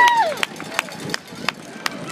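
Marching band's brass section ending a loud held chord with a downward slide in pitch, cut off about a third of a second in. Afterwards come a few sharp taps, roughly three a second, over crowd murmur.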